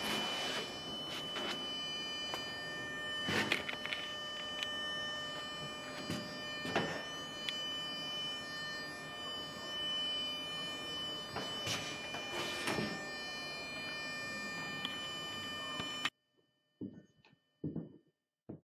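Wind tunnel fan running: a steady rush of air carrying a high whine of several steady tones, broken by a few short louder bursts. The sound cuts off suddenly near the end.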